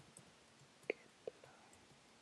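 A few faint computer keyboard keystrokes, single clicks spaced apart, the clearest about a second in.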